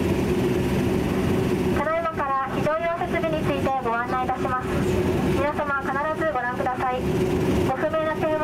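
Steady drone of a DHC-8 Q400's PW150A turboprop engines running on the ground, heard inside the cabin, with a low hum in several steady tones. A cabin PA announcement voice comes in over it after about two seconds.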